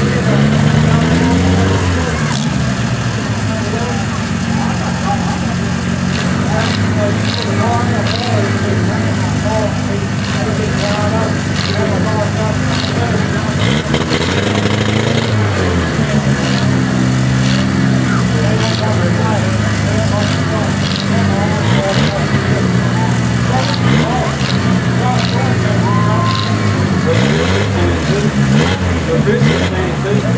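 Engines of several battered compact demolition-derby cars running and revving, the pitch swelling up and down a few times, over the chatter of a crowd.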